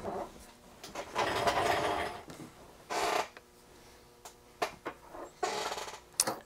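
Handling noise as blank perforated circuit protoboards are picked up and moved about on a wooden workbench: a few short spells of rubbing and rustling with a couple of light clicks.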